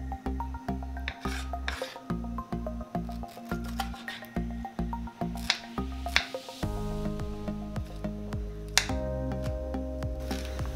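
Kitchen knife cutting through ripe pineapple and striking a wooden chopping board, several sharp cuts with rasping strokes between them, over background music.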